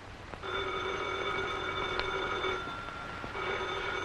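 Telephone bell ringing twice: one ring of about two seconds, a short pause, then the next ring starting near the end.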